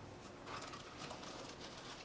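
Faint rustling and handling of wired sheer ribbon as it is twisted and pressed onto toothpicks in a foam block.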